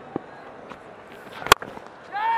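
Cricket bat striking the ball: one sharp, loud crack about one and a half seconds in, over low steady background noise.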